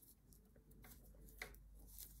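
Near silence, with a couple of faint clicks from metal knitting needles working yarn.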